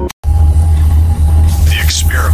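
A loud, steady low hum, a droning sound-design bed, begins after a brief cut to silence at the very start. A voice starts near the end.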